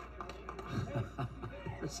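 Indistinct, overlapping voices and short shouts from people around the wrestling mat, with a few sharp taps.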